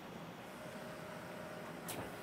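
Willemin-Macodel 408MT mill-turn machine cutting a part under flood coolant, heard faintly as a steady hiss of coolant spray. A faint steady whine comes in about half a second in, and a short click sounds near the end.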